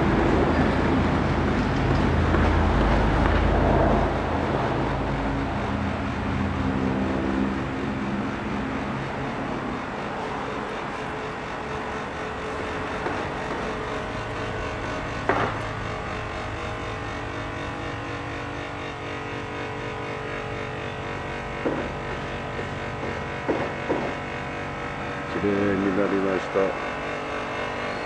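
Wind rumbling on the microphone for the first few seconds, then a steady low hum. A few high, wavering voices come in near the end.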